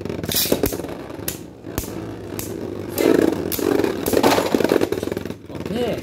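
Beyblade Burst spinning tops whirring on the plastic floor of a stadium, with a fast ticking scrape of their tips. Several sharp clacks come in the first two seconds as the tops collide.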